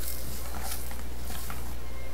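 Raw rice toasting in hot oil in a pan, a steady sizzling hiss with a few faint scrapes as it is stirred, over a constant low electrical hum.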